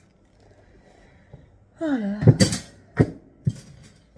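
A few sharp clacks and knocks of hard objects being handled and set down, starting about halfway through.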